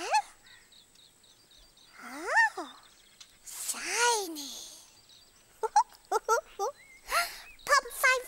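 A cartoon character's voice making wordless sounds: two long sliding whoops that rise and fall in pitch, then a quick run of short high chirps near the end.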